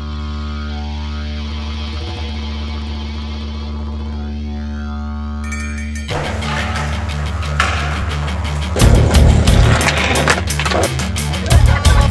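Soundtrack music: a steady, sustained droning tone for about six seconds, then a loud, dense rock track with heavy low drum hits comes in.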